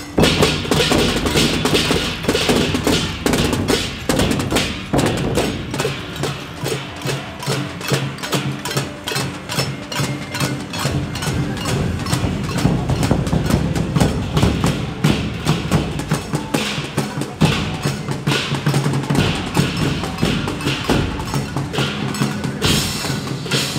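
Taiwanese temple-procession percussion: a large barrel drum, small drums, gongs and hand cymbals struck together in a dense, steady beat that starts suddenly.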